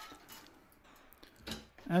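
Faint handling sounds from a small cable connector being worked off a computer motherboard, with a soft click about a second and a half in.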